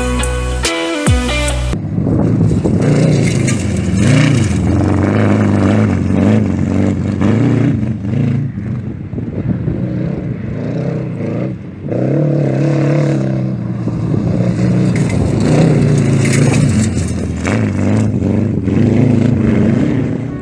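Vintage Volkswagen-powered speedcar engine running hard on a dirt track, its pitch rising and falling again and again as it accelerates and backs off. Guitar music plays for the first couple of seconds.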